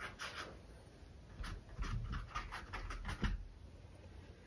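Quiet handling of paintbrushes at the easel: a quick run of soft scratchy ticks, about six a second, with a few low bumps, from about a second and a half in until near the end.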